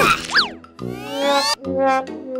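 Cartoon sound effects over background music: a quick pitch glide up and back down, then a long rising whistle-like sweep that cuts off suddenly about a second and a half in.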